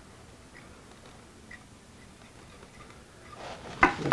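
Clamps being handled and fitted onto a guitar side-bending machine: a few faint small ticks, then a sharp click near the end.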